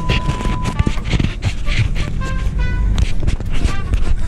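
A broadcast test-card tone, a steady high beep of the bars-and-tone kind, cuts off about three-quarters of a second in. It is followed by music with scattered clicks and short tones.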